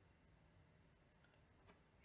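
Near silence with a few faint computer keyboard key clicks a little past the middle.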